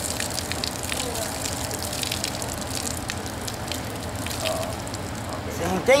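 Water poured from a small plastic tub over a tied, dye-soaked T-shirt bundle, running off the cloth and splashing onto gravel as the excess dye is rinsed out.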